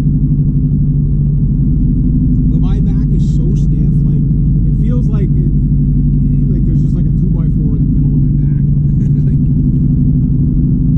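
Steady drone of a Honda Civic's engine and road noise heard inside the cabin while cruising. A person's voice comes and goes over it from a couple of seconds in.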